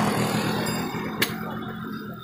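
Handheld electric tattoo machine buzzing with a steady low hum as it needles the skin, with a single sharp click about a second in.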